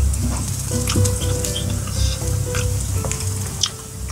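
Marinated chicken dak galbi sizzling on a small charcoal grill, a steady hiss broken by scattered sharp crackles and pops.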